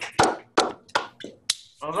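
Applause from several video-call participants heard through their unmuted microphones, thinning out to a few last separate claps. A man starts speaking near the end.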